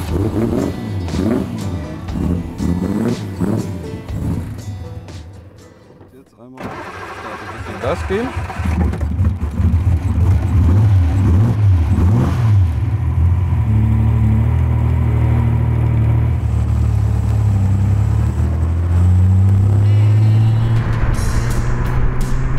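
A BMW 328 racing roadster's two-litre straight-six engine catches about six and a half seconds in, then runs loud and low as the car is driven off, its pitch shifting up and down in steps. Voices are heard over the first few seconds.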